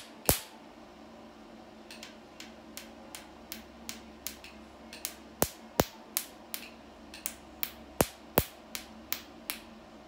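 Picosecond laser handpiece firing pulses on facial skin, each pulse a sharp snapping click. A pair of loud snaps comes right at the start; from about two seconds in they come steadily at just under three a second, a few much louder than the rest.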